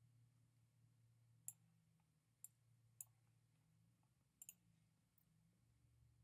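Near silence with about five faint, sharp clicks scattered through it, two of them close together late on.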